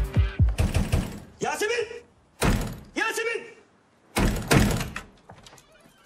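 Heavy pounding on a wooden door, in several rounds of thudding blows, with a voice calling out between them.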